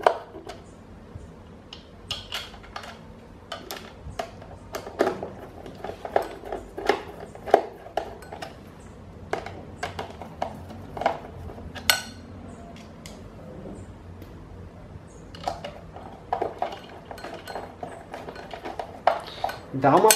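Phillips screwdriver driving small metal screws into the collar of a pedestal fan's base: irregular metallic clicks and scraping as the screws are turned and tightened, with a quieter stretch a little past the middle.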